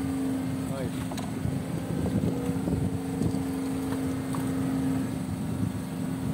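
A fishing boat's engine running with a steady hum, with scattered low voices over it.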